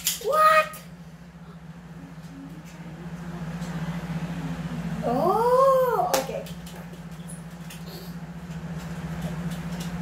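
A child's short exclamation at the very start, then one long, silly vocal sound about halfway through that rises and falls in pitch, over a steady low hum.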